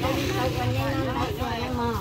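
Pickup truck engine idling with a steady low rumble while several people talk close by.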